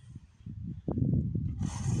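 Irregular low rumbling that grows louder, then a loud breathy hiss near the end, like a sharp intake of breath just before singing resumes.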